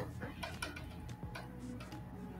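Scattered, irregular light clicks and taps from work at a computer drawing desk, over a low steady background hum.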